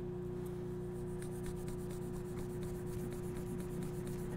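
Abrasive pad rubbed by hand over a stainless steel pick guard, giving faint repeated scrubbing strokes as a brushed grain is worked into the metal. A steady low hum runs underneath.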